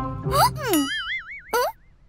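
Cartoon sound effects: a quick swooping up-and-down pitch glide, then a springy wobbling boing that fades out near the end.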